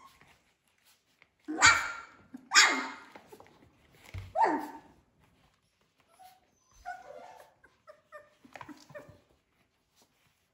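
Three-week-old Australian Labradoodle puppies barking: three loud, short barks in the first half, then softer, shorter whimpers and yips.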